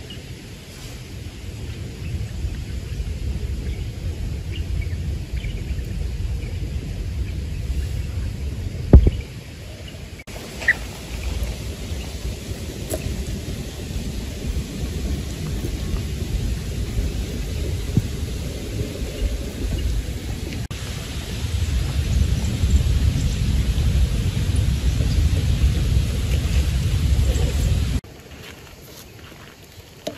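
Wind buffeting the microphone as a steady low rumble with no clear tone, with one sharp thump about nine seconds in; the rumble grows louder in the second half and cuts off abruptly near the end.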